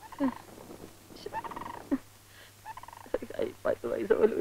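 A man's voice making short, broken vocal sounds, a few at a time with pauses between them, more of them near the end.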